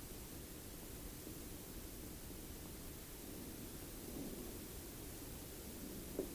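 Faint steady hiss of room tone, with faint rustling from hands handling a PVC pipe assembly.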